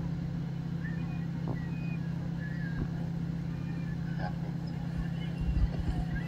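A steady low hum under faint background noise, with a few faint high wisps and a brief low rumble near the end.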